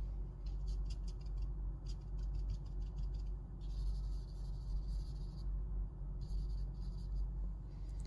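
Willow charcoal scratching across sketchbook paper in quick short strokes, then a steady rub for about two seconds as the drawing is smudged by hand, then more quick strokes. A steady low hum runs underneath.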